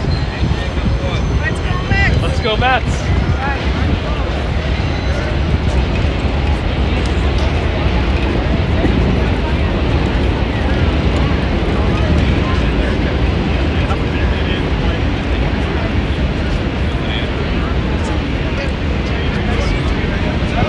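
Indistinct chatter of people talking outdoors over a steady low rumble of outdoor noise, with a few voices standing out briefly near the start.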